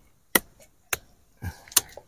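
A machete chopping cassava tubers off the stem: four sharp chops, the last two close together.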